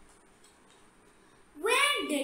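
Quiet room tone, then near the end a loud vocal call that rises in pitch.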